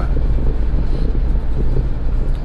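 Road noise inside a moving van's cab: a steady low rumble of engine and tyres with a faint hiss above it.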